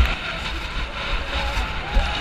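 Wind rumbling on the microphone of a helmet camera and skis hissing over soft snow during a fast downhill run, with a sharp knock right at the start. Faint distant voices come in near the end.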